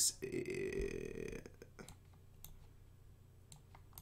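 A short, low vocal sound lasting about a second and a half, then a few faint separate clicks.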